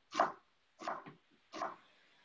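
Chef's knife dicing an onion on a wooden cutting board: a few separate chops about half a second apart, the first the loudest.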